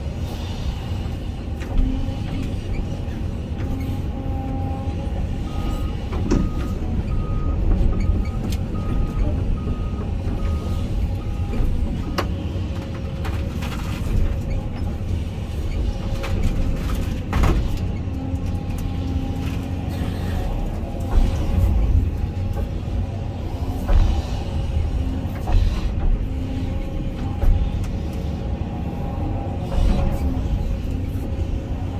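Hyundai excavator's engine and hydraulics running steadily under load, heard from inside the cab, with scattered sharp knocks and cracks as the bucket and thumb grab and pile brush. From about six seconds in to about twelve, a short beep repeats about one and a half times a second.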